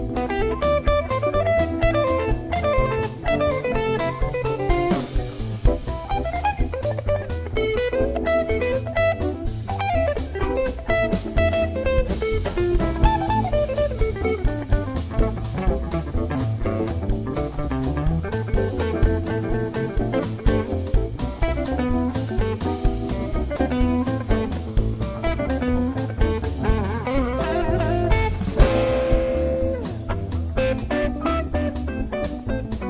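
Live instrumental jazz-blues: a hollow-body electric guitar plays quick single-note lead runs over upright bass and a drum kit with cymbals. A bright chord rings out near the end.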